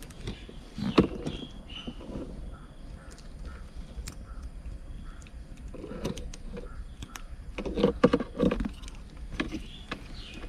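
Scattered light clicks and knocks of wiring and plastic connectors being handled in a car's opened centre console, with a quick run of taps about eight seconds in.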